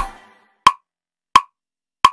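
The song's music stops and dies away at the start. Then a metronome click track ticks on its own, two sharp, even clicks about two-thirds of a second apart.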